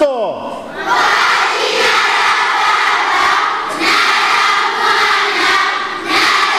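A large crowd of children shouting in unison as they make the sign of the cross and recite its words in Swahili, with a short break near the middle.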